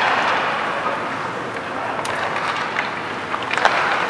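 Ice hockey practice ambience in an arena: a steady wash of skates on ice and background voices, broken by a few sharp clacks.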